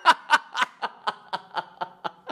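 A man laughing hard in a rapid run of short bursts, about four a second, which grow weaker toward the end.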